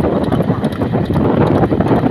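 Wind rushing over the microphone of a camera moving at road speed, with road noise from the filming vehicle: a loud, constant rush with irregular buffeting.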